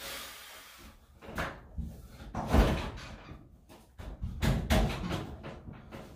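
A clothes dryer being shoved and settled onto a stacking kit on top of a washer: a series of heavy thumps and knocks from the metal cabinets. The loudest comes about two and a half seconds in, with a few more just before the end.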